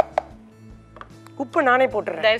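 Short knocks of a kitchen utensil against cookware: two quick ones at the start and a lighter click about a second in, followed by a woman's voice near the end.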